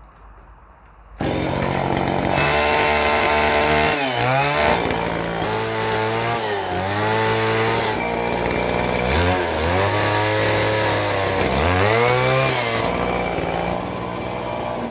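Chainsaw starting abruptly about a second in, then cutting into a timber railing bracket. Its pitch drops and recovers four or five times as the bar bites into the wood under load and is eased off.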